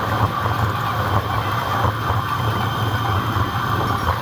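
Steady rumble and rushing noise of a bicycle ride along a city bike lane, with road rumble and wind on the camera's microphone.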